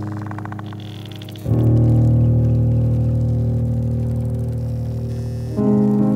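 Downtempo jazz-electronic music: sustained keyboard chords, a new low chord struck about one and a half seconds in and another near the end, each fading slowly, with a brief high shimmering synth texture just before the first.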